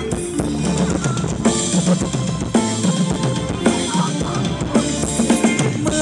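Thai ramwong dance music played by a live band, with drums keeping a steady beat under pitched instruments playing the tune.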